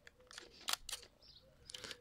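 Fujifilm X-Pro1 with an XF 35mm f/1.4 lens focusing and firing: a few faint sharp clicks, a pair a little under a second in and a quick cluster near the end.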